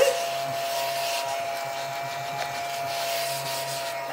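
A small strawberry-shaped desk vacuum running with a steady whine, sucking up scratch-card shavings from the table.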